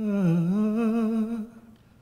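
A man's unaccompanied voice humming a slow, wordless melody into a microphone: the note dips in pitch and comes back up, is held, then stops about three quarters of the way through.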